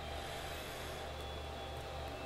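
Steady low room noise: a faint hum and hiss with no distinct events.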